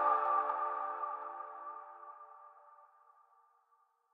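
The last chord of an electronic music sting rings out and fades away over about two and a half seconds.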